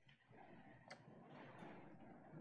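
Near silence: room tone, with a faint sharp click about a second in and a softer one shortly after.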